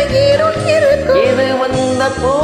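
Karaoke singing of a Tamil film song over its instrumental backing track, a voice holding a long, wavering note.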